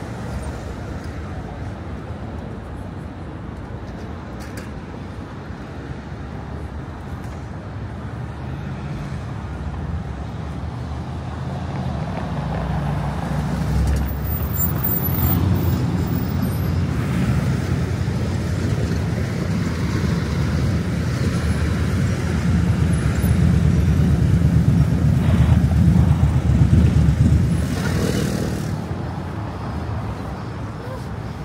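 City street traffic: a steady low rumble of cars and other vehicles that builds through the middle and is loudest near the end, as traffic passes close, then eases off just before the end.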